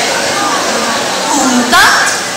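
Speech in a large hall: a woman's voice calling, with a short call near the end, over a steady background hiss.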